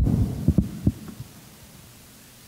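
Handling noise from a handheld microphone being lowered and bumped against a wooden pulpit: a sharp thump, then about four softer low thumps in the first second or so, over a low room hum.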